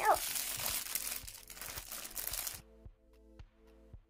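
Plastic packaging crinkling and tearing as a rolled-up T-shirt is unwrapped by hand. It cuts off abruptly about two and a half seconds in, and quiet background music with a repeating note pattern follows.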